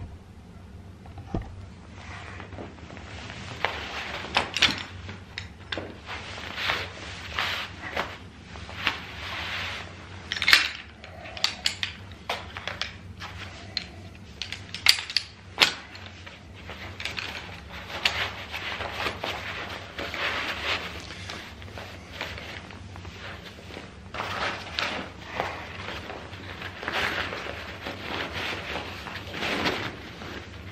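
Collapsed frame of a lightweight pack-away camping chair being handled and packed into its fabric carry bag: continuous rustling of the fabric with irregular clicks and light knocks from the poles.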